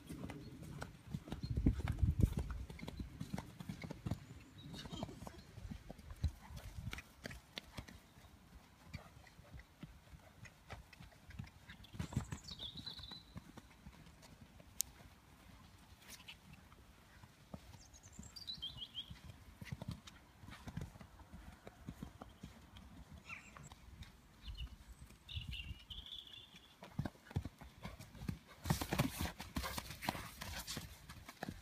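A pony's hoofbeats on grass turf as it is ridden around the field, a string of soft, irregular thuds that are loudest when it passes close in the first few seconds and again near the end, fainter while it is across the field.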